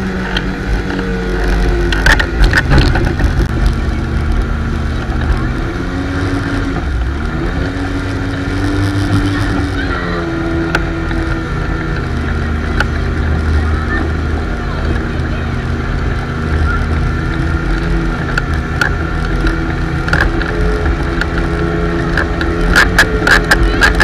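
Motorboat engine running under way while towing a tube, with water rushing past the hull. The engine's pitch rises and falls between about six and eleven seconds in as the boat turns.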